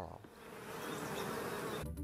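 Honeybees buzzing at their hive: a steady swarm hum that swells over the first half second, holds, and cuts off shortly before the end.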